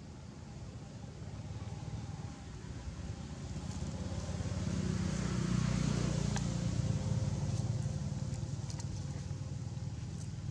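Low rumble of a passing motor vehicle. It swells to its loudest about halfway through and then slowly fades, with a few faint clicks over it.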